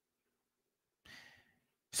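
Near silence, then a man's short, faint breath about a second in, taken just before he speaks again.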